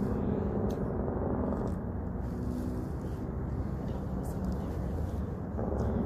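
Steady low background rumble with a faint hum, the kind distant road traffic makes.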